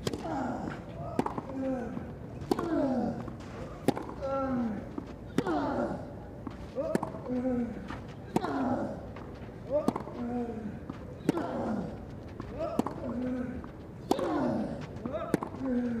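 A long tennis rally on clay: about a dozen racket strikes on the ball, roughly one every second and a half, each with a player's grunt that falls in pitch.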